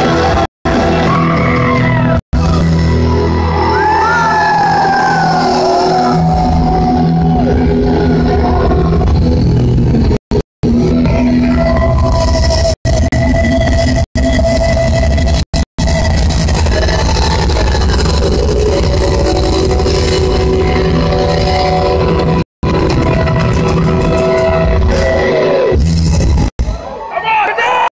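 A live band playing loud amplified music, heard from the audience, with a gliding melody line over steady bass early on. The sound cuts out to silence for an instant about eight times.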